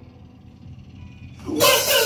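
A live rock band of electric guitars and drums kicks into a song about one and a half seconds in, loud and sudden after a quiet moment with a faint amplifier hum.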